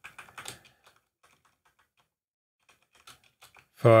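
Typing on a computer keyboard: a quick run of keystrokes in the first second, then a few scattered taps about three seconds in.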